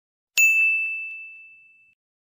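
A single bright bell-like ding, a subscribe-button sound effect, struck about a third of a second in and ringing on one high note as it fades away over about a second and a half.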